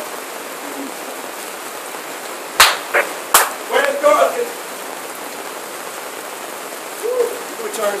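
Steady hiss of rain falling on a tent canopy. Two sharp knocks come about a second apart near the middle and are the loudest sounds.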